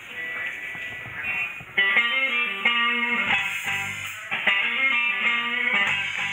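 Live electric guitar starting a song: soft picked notes at first, then loud strummed chords from about two seconds in.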